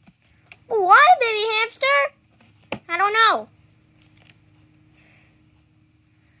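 A child's high-pitched voice makes two short vocalisations with no clear words, rising and falling in pitch, the first about a second long and the second shorter. A sharp click comes between them.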